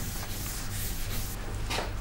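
Chalkboard eraser rubbing over a blackboard, wiping off chalk writing: a steady dry scrubbing.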